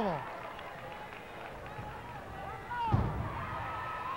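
Low crowd murmur around a wrestling ring, broken about three quarters of the way through by one heavy thud of a body landing on the ring canvas, with a short cry at the same moment.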